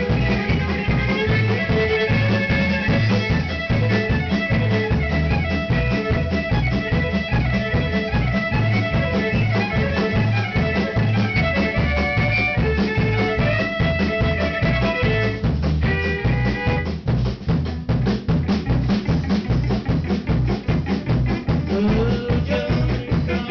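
Live band playing a fast tune: a fiddle carries the melody over a driving drum kit beat and electric guitar. About two-thirds of the way through, the fiddle drops out, leaving the drums and guitar.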